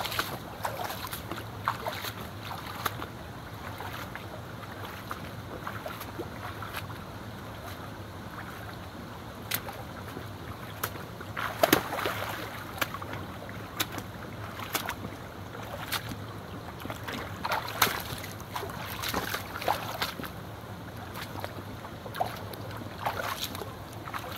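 The North Face Back To Berkeley III hiking boots splashing step by step through a shallow stream, over the steady rush of the flowing water. The splashes come at irregular intervals, and the loudest ones fall around the middle.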